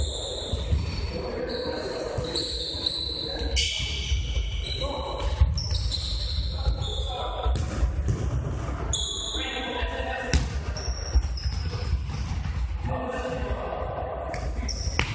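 Futsal being played in a large gym hall: the ball being kicked and bouncing on the hard floor in sharp knocks, with short high squeaks of shoes on the floor and players calling out.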